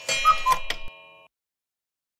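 A clock-ticking sound effect over ringing chime-like notes, used as a time-skip cue. It fades out a little over a second in, then cuts to silence.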